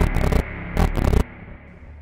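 Digital glitch sound effect: stuttering bursts of static noise switching on and off over a low hum. It cuts off a little over a second in, leaving only the quieter hum.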